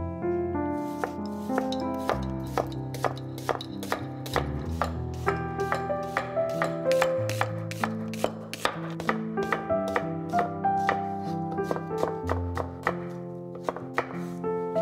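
A chef's knife slicing a yellow onion on a wooden cutting board: a fast, even run of sharp knocks as the blade goes through and hits the board, about three a second, over background music.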